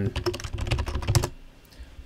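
Computer keyboard typing: a quick run of keystrokes lasting just over a second as a short word is typed into a search box, with a couple of lighter clicks near the end.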